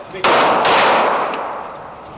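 Two 9mm shots from a Glock 19C compact pistol, about half a second apart, each sharp crack followed by a long echoing decay off the hard walls of an indoor range. A few faint, brief metallic pings follow.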